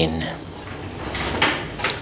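A man's spoken word trailing off, then a pause with a steady low hum underneath.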